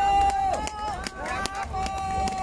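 Voices calling out in long drawn-out cries, several overlapping, with a few sharp claps in between: approval from the crowd.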